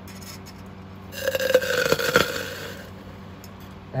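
Hypergolic reaction of concentrated hydrazine with fuming nitric acid in a glass test tube: a sudden hissing fizz with crackles. It starts about a second in and lasts about a second and a half.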